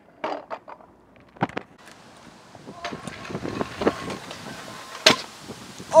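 Stunt scooter wheels rolling on a concrete skatepark bowl. The rolling builds from about three seconds in, with a sharp clack about a second and a half in and a hard landing clack about five seconds in as the rider lands a fly-out trick.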